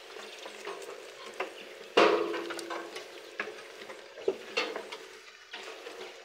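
Sheep and goats jostling and feeding at a trough: steady scuffling, rustling and crunching with scattered clicks. A sudden louder knock about two seconds in, followed by a brief held tone, is the loudest moment.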